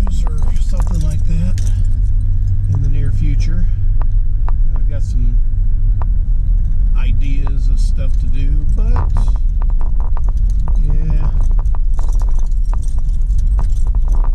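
Car cabin noise while driving: a steady low rumble of engine and road, with frequent small rattling clicks. A voice is heard on and off over it.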